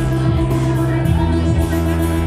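Live looped rock music: electric guitar over a sustained bass line and a steady beat, with the low bass note dropping to a lower pitch about a second in.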